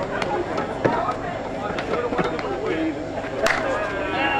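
Voices of players and spectators calling out across an outdoor softball field, with a single sharp crack about three and a half seconds in.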